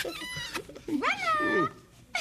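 Cat meowing: a short call at the start, then one longer call about a second in that rises and falls in pitch.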